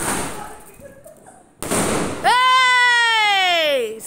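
Diwali firecrackers going off: a sharp bang right at the start that dies away over about a second, and a second loud burst of noise about a second and a half in. A loud, long tone then falls steadily in pitch for nearly two seconds.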